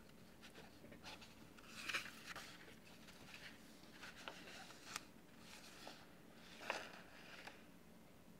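Quiet paper handling: a series of short rustles and crinkles as the pages of a printed manual are shifted and turned, the loudest about two-thirds of the way in, over a faint steady low hum.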